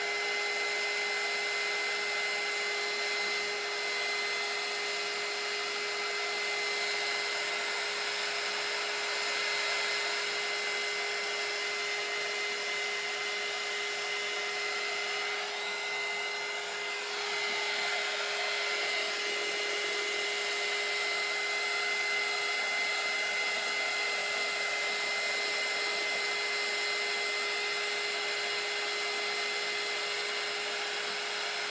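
Handheld craft heat tool (embossing heat gun) running steadily to dry wet marker ink on a canvas: a continuous blowing hiss with a steady high whine. It dips briefly about halfway through.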